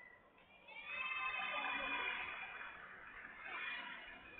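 A high-pitched voice calling out: one long call of about a second and a half, then a shorter one near the end.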